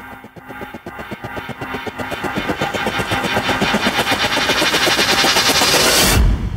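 Intro-music riser: a fast stutter of short glitchy pulses that swells steadily louder and brighter, breaking into a heavy bass hit at the very end.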